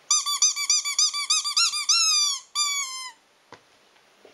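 Squeaky rubber ball toy being chewed by a German Shepherd: a rapid run of short squeaks, about six a second, then two longer squeaks falling in pitch. The squeaking stops about three seconds in, and a faint click follows.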